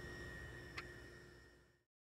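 Faint background noise with a few thin steady hums, one brief tick a little under a second in, fading out to complete silence shortly before the end.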